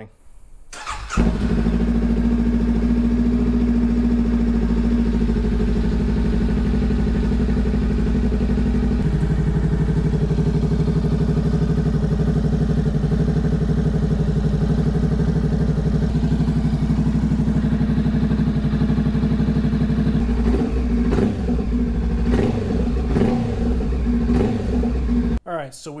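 Honda Rebel 500's parallel-twin engine started on the electric starter, catching about a second in, then idling steadily, its first run on fresh oil after an oil change. The idle note settles slightly lower about nine seconds in.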